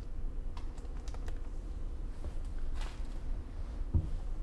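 Scattered light clicks and a short rustle over a steady low rumble, ending with one low thump just before the end.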